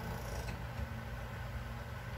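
A steady low hum in a small room, with no distinct events.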